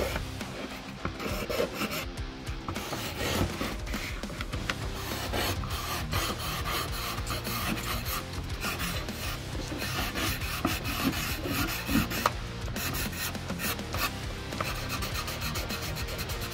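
Pencil scratching on paper in rapid, short hatching strokes, laying down dense dark shading.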